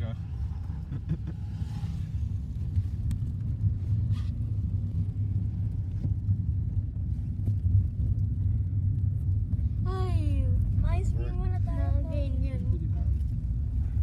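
Steady low rumble of a car's engine and tyres heard from inside the cabin while driving. A person's voice speaks briefly from about ten seconds in.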